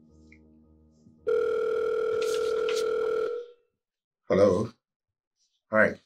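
A steady electronic telephone tone, one held note lasting about two seconds before it cuts off, on a mobile phone call. Short bits of a voice follow near the end.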